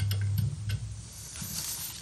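Soft crackle and faint hiss of solder and flux as a soldering iron melts a blob of tin onto an LED lamp's circuit board, bridging the two terminals of a failed LED. There are a few small clicks, and a low hum fades out about half a second in.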